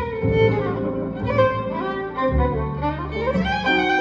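Jazz violin solo played with the bow: a slow melody that slides up to a higher note about three seconds in. It is accompanied by guitar and upright double bass.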